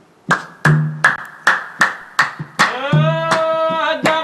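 Opening of a Mauritanian madh praise song: a steady beat of sharp drum strokes, about two and a half a second, then a voice comes in singing a long held note about three seconds in.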